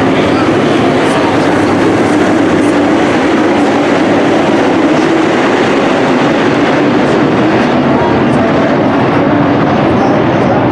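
A pack of dirt-track modified race cars running together, their V8 engines making a loud, steady, dense din inside a domed arena.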